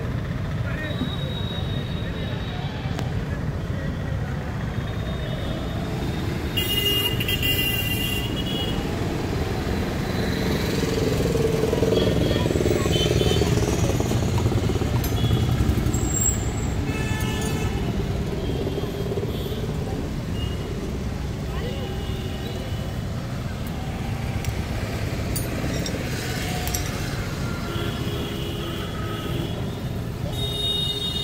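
Steady low rumble of outdoor traffic, with short high-pitched tones now and then and indistinct voices in the background.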